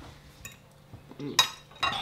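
Metal fork clinking and scraping on a china plate of rice while eating hurriedly, with a couple of sharp clinks in the second half.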